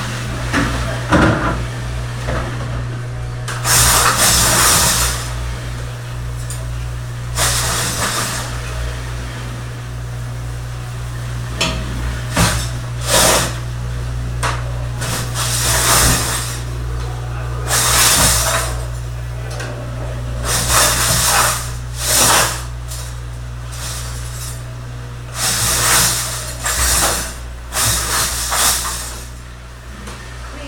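A commercial pre-rinse spray hose at a stainless steel sink, let off in repeated short bursts of spraying water, with dishes and utensils clattering in between. A steady low hum runs underneath.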